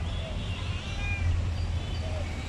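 A faint, short animal call about a second in, over a steady low hum.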